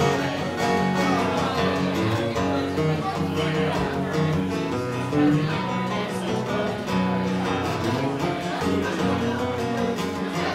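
Acoustic guitar played solo in a country-style instrumental break, picked note runs over chords between sung verses.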